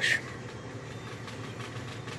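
A steady low mechanical hum with no distinct events.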